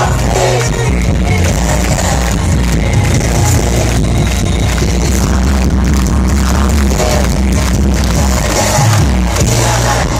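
Loud live hip-hop concert music from a festival stage sound system, heard from within the crowd, with a heavy, steady bass line.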